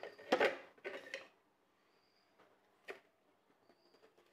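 Quiet handling of a knife on a plate: two short scraping rustles in the first second, then a single sharp click about three seconds in as the knife meets the plate.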